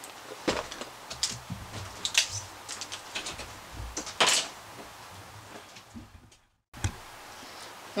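Cardboard box being handled and its flaps opened, with scattered light knocks and scrapes as it is set down on a table. The sound drops out briefly near the end.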